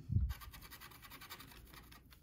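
A plastic scratcher tool scraping the latex coating off a scratch-off lottery ticket in quick, faint, rapid strokes, after the tail of a spoken word at the start.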